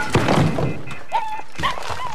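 Debris crashing in a wrecked room: a cluster of thuds and clatters in the first half second, then quieter, with a few short high squeaks later on.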